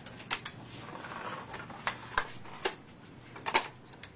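A series of short, sharp clicks and light knocks at irregular intervals, about seven in all, the loudest a close pair near the end, with a soft rustling about a second in.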